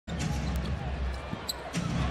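Basketball being dribbled on an arena's hardwood court over the steady hum of the crowd, with a couple of brief high sneaker squeaks.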